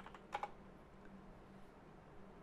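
A few quick keystrokes on a computer keyboard about a third of a second in, then only a faint steady hum.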